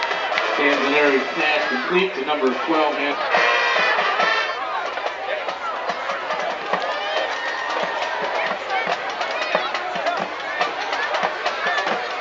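Spectators in the bleachers talking and cheering over one another, with a few seconds of instrumental music playing near the start.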